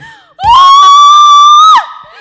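A woman's long, high-pitched scream into a handheld microphone, held steady for over a second and ending with a falling pitch. It is very loud.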